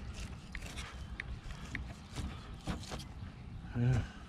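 Fillet knife working catfish fillets on a cutting board: light, scattered taps and scrapes over a steady low outdoor rumble.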